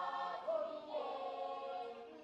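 A choir singing together in harmony, several voices holding long notes at once.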